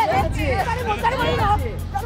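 Excited voices talking over the babble of a crowded exhibition hall, with music faintly underneath.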